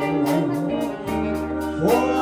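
Live band playing a slow 1950s-style doo-wop ballad: held chords with a cymbal ticking about five times a second. Near the end a voice slides up into the next note.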